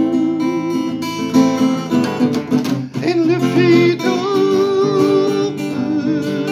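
A man singing a ballad to his own strummed acoustic guitar, holding one long wavering note about two-thirds of the way through.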